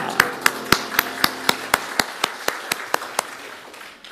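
A small group applauding by hand, with one nearby clapper keeping an even beat of about four claps a second. The clapping fades away near the end.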